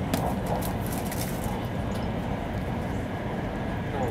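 Cabin noise of a Taiwan High Speed Rail 700T train running at speed: a steady low rumble, with light ticks and rattles in the first second or so.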